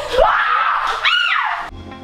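A girl's high-pitched playful scream, rising and falling in pitch. Near the end it is cut off as outro music begins.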